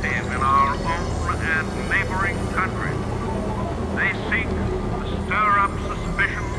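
Cassette-tape-loop electronic music: a steady low synth drone under short, high, wavering fragments of warped voice that bend in pitch and break off, none of it intelligible.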